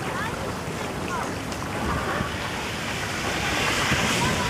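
Steady outdoor rushing noise of wind on the microphone and water, growing louder in the last second, with a few faint short high chirps on top.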